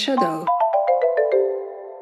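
A short chime-like jingle: about eight quick notes step down in pitch within a second, each left ringing so they pile up into a chord that slowly fades, marking a section change.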